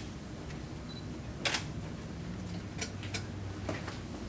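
A few short, sharp clicks, the strongest about a second and a half in, then a close pair and one more near the end, over a low steady room hum.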